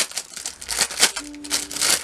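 Clear plastic bag crinkling and rustling as a plastic model kit part is pulled out of it by gloved hands.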